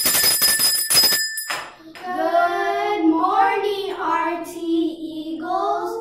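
A small hand bell rung rapidly for about a second and a half, then children's voices singing together in long held notes.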